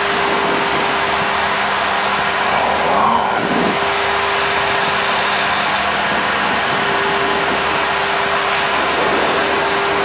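Cockpit noise of the Super Guppy Turbine's four Allison 501 turboprop engines and propellers running steadily on final approach: an even rush of engine and airflow noise with a constant low propeller tone.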